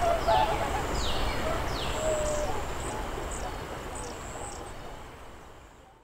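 Outdoor nature ambience with bird calls: a few short falling whistles in the first two seconds, then short high chirps about every half second, all fading out to silence at the end.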